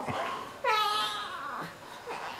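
A newborn baby's short, high-pitched whimpering cry starting about half a second in and fading within a second, with softer fussing sounds around it.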